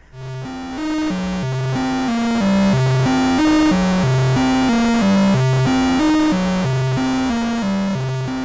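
Eurorack modular synth playing a short repeating sequenced melody of buzzy square-wave notes, with the AniModule TikTok clock divider's divided output used as a sub-oscillator under the VCO. The notes step about three times a second, and the pattern repeats a little more than once a second.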